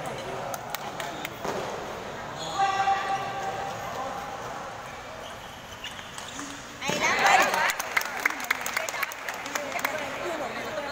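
Table tennis ball clicking off paddles and the table in a doubles rally, with a player's shout about two and a half seconds in. A louder burst of shouting comes about seven seconds in, followed by a quick run of sharp clicks.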